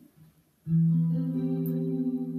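Clean-toned Skervesen electric guitar through a Fractal Axe-FX playing a C major 7 chord in first inversion, E in the bass, on the middle four strings. The notes are rolled in from the lowest up about half a second in and left to ring.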